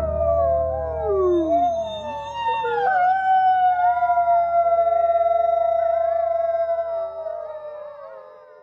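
Wolves howling together in a chorus of long, overlapping howls that glide up and down in pitch, one sliding steeply down in the first couple of seconds. The chorus fades out near the end.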